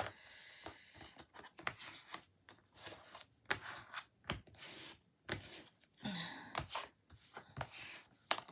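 Paper rustling and scraping as a matted card panel is rubbed down firmly with a plastic tool, with scattered clicks and taps, pressing the double-sided tape so it adheres.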